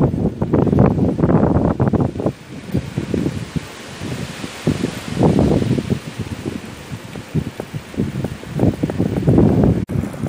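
Wind buffeting a phone's microphone while riding along a street, in irregular rumbling gusts that are strongest at the start, about five seconds in and near the end, with quieter lulls between.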